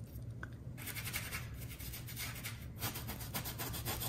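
Paintbrush scrubbing acrylic paint onto a canvas: rapid back-and-forth scratchy strokes that start about a second in and keep going.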